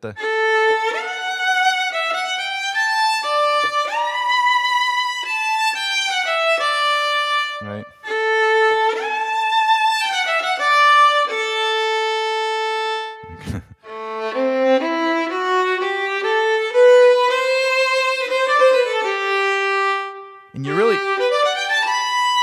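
Sampled solo violin (a recorded legato violin patch) played from a keyboard. A phrase of connected notes plays, some joined by pitch slides and held notes carrying vibrato: the more expressive legato that a harder key velocity calls up.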